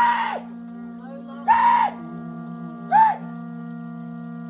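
Māori warriors' loud shouts during a haka-style challenge: three short, sharp cries about a second and a half apart, over a steady droning music bed.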